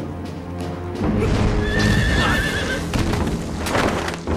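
A horse neighing, a wavering call lasting about a second, over dramatic film score music that swells about a second in. A brief rushing sound comes just before the end.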